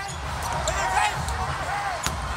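Live basketball game sound: a ball bouncing on the hardwood court over a steady low arena rumble, with faint voices in the background.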